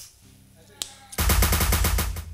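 A single sharp knock, then a loud, rapid run of drum hits on a drum kit starting about a second in, like a drum roll leading into a solo.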